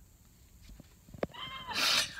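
A woman's short, high-pitched laugh after a sharp click about a second in, trailing into a breathy exhale.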